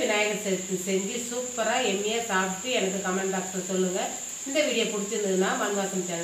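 A woman speaking continuously, with a steady high-pitched whine underneath.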